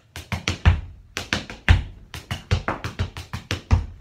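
Tap shoes striking a portable tap board in a quick rhythmic run of shuffles, toe and heel taps (shuffle, toe, heel, brush, toe, shuffle, heel), with a heavier heel drop landing about once a second.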